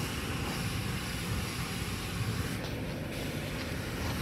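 Steady rushing hiss of water spraying against a car at a car wash, with a low rumble beneath, heard from inside the car.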